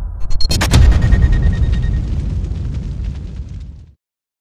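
Cinematic logo sting sound effect: a sudden deep boom impact about half a second in, followed by crackling ticks and a brief ringing tone that die away, cutting off just before the end.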